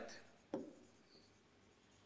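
Faint sounds of a pen writing on a board, with a single sharp click about half a second in as the pen strikes the surface.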